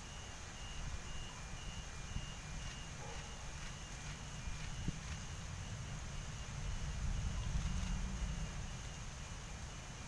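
Heavy rain falling steadily, with a low rumble underneath that swells about seven seconds in. A faint short high beep repeats about twice a second through most of it.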